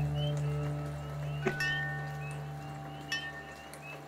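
Sampled wind chimes ringing, struck about every second and a half, over a sustained low synth tone that slowly fades. Short rising chirps from a field recording of a swamp frog chorus repeat throughout, with a faint rain recording beneath.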